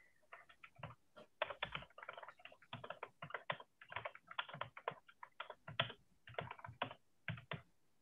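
Typing on a computer keyboard: a quick, irregular run of faint key clicks, heard through a video-call microphone.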